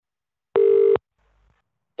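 A single short telephone line beep: one steady, loud tone lasting about half a second that cuts off abruptly, heard over the phone line during a pause in the call.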